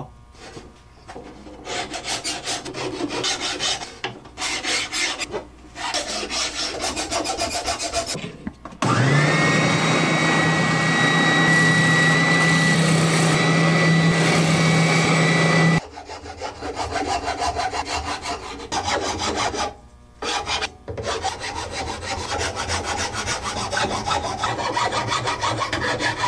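Half-round file rasping on a wooden guitar neck heel in repeated strokes. About nine seconds in, an electric motor spins up, runs steadily and much louder for about seven seconds, and cuts off abruptly; then the filing resumes.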